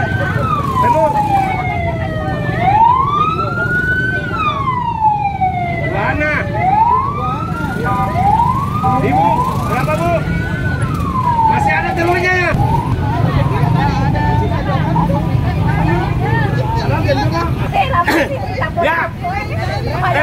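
Siren wailing, its pitch sliding slowly down and up about three times, each cycle about four seconds long, and stopping about twelve seconds in. A low steady rumble and people's voices run underneath.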